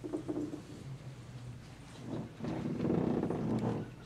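Indistinct, muffled voice with no clear words: a brief sound at the start, then a louder one lasting about a second and a half in the second half.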